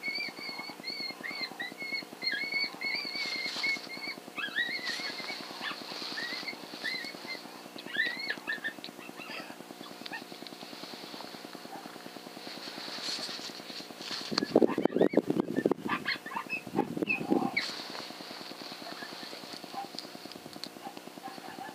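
Coyote calls: a long wavering howl for the first few seconds, then short rising and falling yips, and about three seconds from the end a louder, harsh, rough sound lasting about three seconds. A steady electronic buzz runs underneath.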